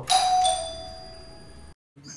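Doorbell chime: a two-note ding-dong, the second note lower, ringing and fading for about a second and a half before cutting off abruptly.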